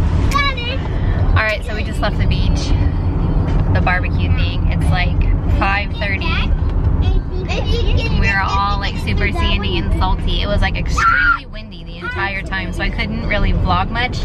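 Loud chatter of several voices inside a moving car's cabin, too loud to talk over, over a steady low rumble of road and engine noise.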